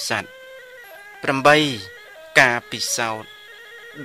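A monk's voice preaching in Khmer in short phrases with long, sliding pitch, with faint steady tones behind it between the phrases.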